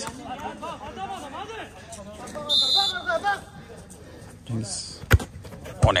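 Players shouting across a five-a-side football pitch, then near the end two sharp thuds, under a second apart, of the ball being kicked.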